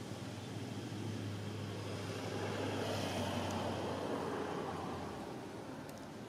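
Distant road vehicle passing, its engine and road noise swelling two to three seconds in and fading toward the end, over a steady low hum.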